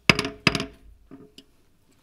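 Two sharp wooden knocks of a gavel, about half a second apart, followed by a couple of fainter knocks and clicks: the chair calling the committee meeting to order.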